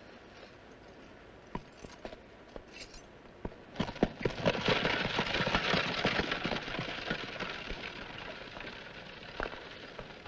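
Horse-drawn carriage setting off: a few scattered clicks and knocks, then from about four seconds in a dense rattle of rolling wheels and horse hooves that slowly fades.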